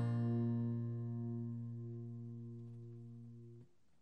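Solo guitar music: a single chord rings out and slowly fades, then cuts off abruptly near the end.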